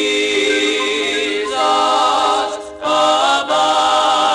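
Male gospel vocal quartet singing in close harmony, with a brief break between phrases about two-thirds of the way through.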